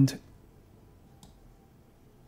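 A single faint computer-mouse click about a second in, against quiet room tone, just after a spoken word ends at the start.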